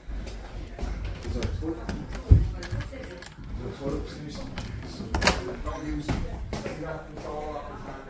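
Indistinct voices and handling rumble, with a heavy thump about two seconds in and a sharp click about five seconds in; a laugh near the end.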